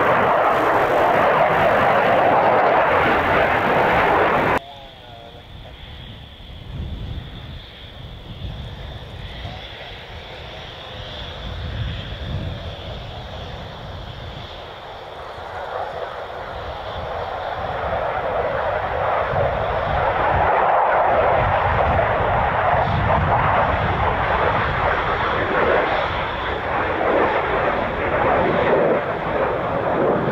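F-15 jet engines running. The loud jet noise cuts off abruptly a few seconds in, giving way to a quieter stretch with a steady high-pitched turbine whine and low rumble. It swells back to loud jet noise from about the middle on.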